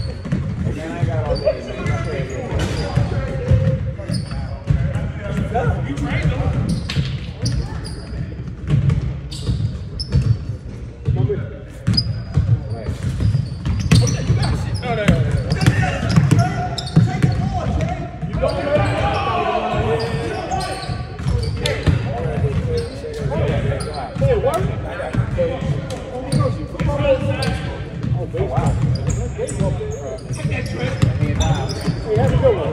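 Basketballs bouncing on a hardwood gym floor during pickup play, sharp repeated knocks ringing in the big hall, over a steady chatter of players' voices that grows louder for a couple of seconds just past the middle.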